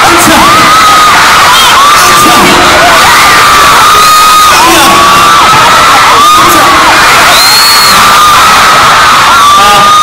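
A large concert crowd of fans screaming, mostly shrill, long, overlapping high-pitched screams, several of them very close to the microphone. The screaming is loud and continuous.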